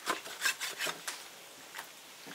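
Chinese cleaver slicing raw beef tripe on a wooden chopping board: a quick run of about five short cuts in the first second, each meeting the wood, then one more near the end.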